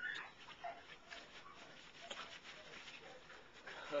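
Short-coated Bouvier puppy making faint, soft vocal sounds, with a brief louder sound right at the start.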